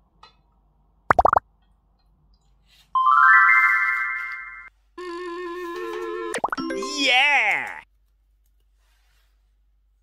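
A string of cartoon sound effects: a short plop about a second in, then a chime that steps upward around three seconds, then a held electronic chord that breaks into a wobbling, falling warble.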